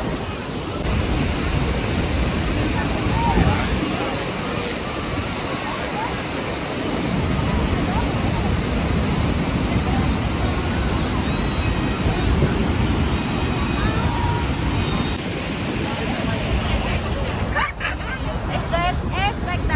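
Steady roar of the Iguazú Falls' water plunging over the cliffs, with a crowd of tourists talking faintly under it.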